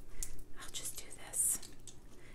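A pick tool poking small die-cut hearts out of cardstock: soft, scattered paper scratches and light clicks.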